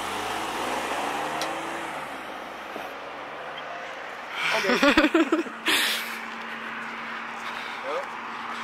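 Road traffic at night: a car drives by in the first two seconds, its engine note gliding in pitch over a steady roadway hiss. A few seconds of talk come about halfway through, followed by a steady low hum.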